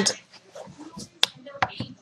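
A fabric drawstring pouch being handled on a wooden desk: faint rustling, with two sharp clicks close together a little after a second in.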